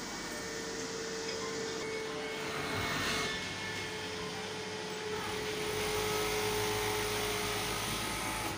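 Steady machine hum of a garment sewing floor, with a thin steady whine running through it.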